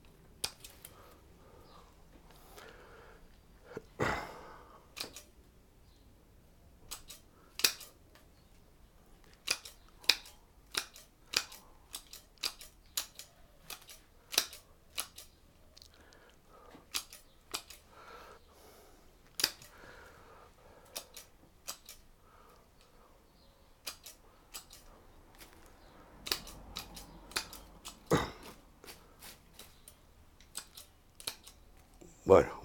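Bonsai pruning scissors snipping twigs off a Chinese elm: a long series of short sharp snips at an irregular pace of about one or two a second, with a couple of heavier knocks, one about four seconds in and one near the end.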